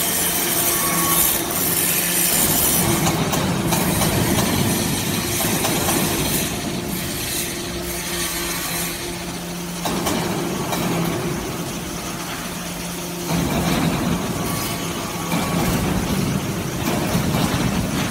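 Hydraulic metal-chip briquetting press and its chip conveyor running: a steady hum of the hydraulic pump motor under continuous rattling, scraping mechanical noise. The noise dips about ten seconds in and grows louder again about three seconds later.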